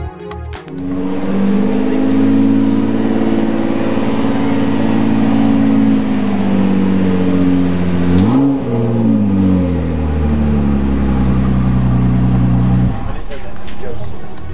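Ford GT supercar's twin-turbo V6 engine idling with a slightly wavering pitch, given one quick throttle blip about eight seconds in. It then settles back to idle and cuts off shortly before the end.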